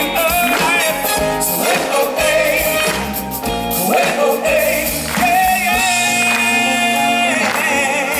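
A live pop band plays on stage, with drums, electric bass, acoustic guitar, violin and trombone, and voices sing over it. The singing holds long, wavering notes in the second half.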